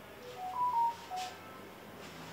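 An electronic notification chime: five short pure beeps in a quick little tune, rising in pitch and then falling, lasting about a second.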